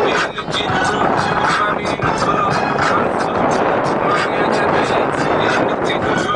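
Hip hop music with a steady beat and vocals, over the running noise of a vehicle.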